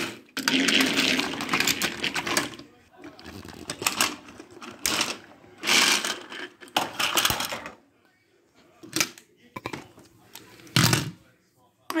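Plastic toy trains being crashed together and clattering on a wooden table. A single loud thump comes about eleven seconds in as a piece falls to the floor.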